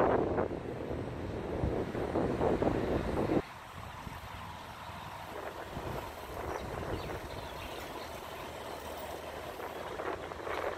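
Outdoor street noise: a low rumble of traffic mixed with wind on the microphone. It is louder for the first few seconds, then drops abruptly about a third of the way in and carries on more quietly.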